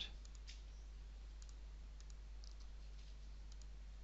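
Faint computer mouse clicks: scattered light ticks, a few in quick pairs, over a steady low hum.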